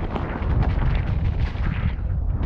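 Wind rumble on a helmet-mounted camera's microphone together with the clatter and knocks of a mountain bike rolling fast down a rough dirt trail.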